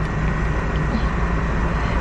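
Steady car cabin noise: the car's engine running at idle as a low rumble under an even hiss.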